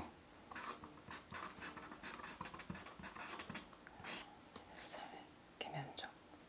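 Pen scratching on paper in short, irregular strokes, faint, as characters are written out. A brief murmured voice comes near the end.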